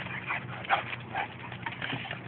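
Two dogs playing rough along a chain-link fence: short, scattered dog noises and scuffling as they wrestle and chase.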